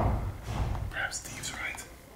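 Whispered speech, with footsteps and low thumps on a hard floor. The loudest thump comes right at the start.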